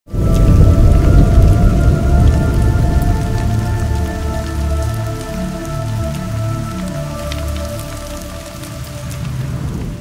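Cinematic logo-reveal sound design: a heavy low rumble and a crackling, rain-like hiss over a sustained drone chord. It starts suddenly and loud, then slowly fades.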